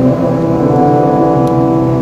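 Congregation singing a hymn together, holding long sustained notes.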